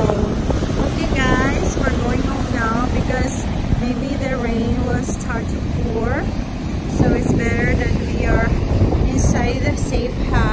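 Strong wind buffeting the microphone over breaking surf. Through it comes a run of short, high, bending calls, repeating every half second or so.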